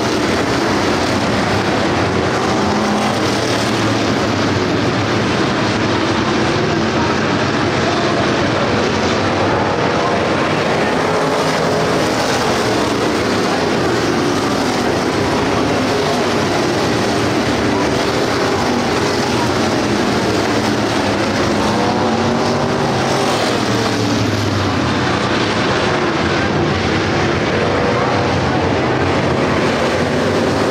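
A pack of dirt-track race cars running at racing speed around the oval, many engines sounding at once. It is a loud, continuous din whose pitch keeps rising and falling as cars lap and pass.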